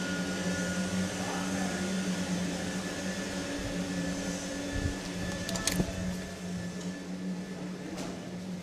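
Steady hum of factory machinery, with a faint high whine above it and a few light knocks a little past the middle.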